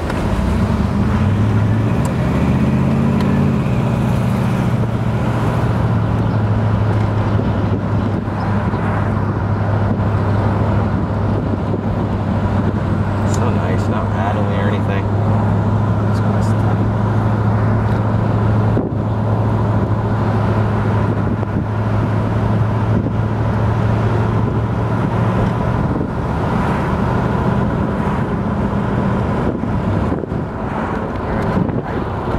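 The 1968 Buick GS 400's original 400 V8 engine, heard from inside the moving car. Its note climbs over the first few seconds as the car picks up speed, then holds steady while it cruises, easing off slightly near the end.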